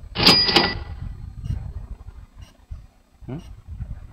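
A short slide-presentation sound effect as the caption appears: two sharp clicks with a bell-like ring, lasting about half a second. A man's short questioning 'Hmm?' comes near the end.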